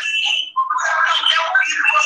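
Tinny, thin voice or singing with no bass, coming from a mobile phone's speaker and picked up by a computer microphone on a video call.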